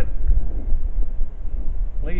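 Wind buffeting the microphone outdoors: a low, uneven rumble that rises and falls.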